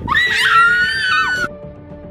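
A loud, high-pitched scream lasting about a second and a half, cut off abruptly, over dramatic background music.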